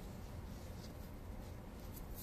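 Faint soft rubbing and scrunching of a terry-cloth towel caked in powdered cleanser, squeezed between hands in a tub of powder, with brief scratchy brushes about a second in and again near the end.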